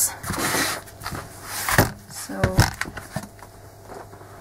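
Handling noise from a freshly glued paper book block: a short rustle as the block is turned in the hands, then a light knock about two seconds in as it is moved.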